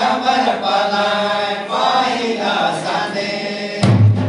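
A group of voices sings a devotional bhajan in chorus, with long held notes. Just before the end a louder, deeper sound suddenly comes in under the singing.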